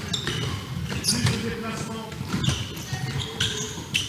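A handball thudding several times as it is passed, caught and bounced on a sports-hall court during a running drill, with players' footsteps and low voices in the background.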